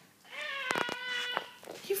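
Domestic cat giving one long meow, about a second long, starting about a third of a second in and held at a steady pitch.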